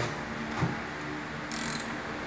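A socket ratchet clicking as it turns over the crankshaft of a Honda D16Y7 engine block by hand, with a short run of rapid clicks near the end.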